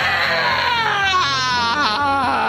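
A person's high, drawn-out wailing voice, sliding slowly down in pitch and wavering near the end, heard as laughter.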